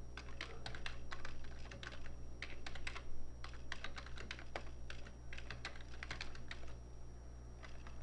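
Typing on a computer keyboard: irregular runs of quick key clicks with brief pauses between them, over a low steady hum.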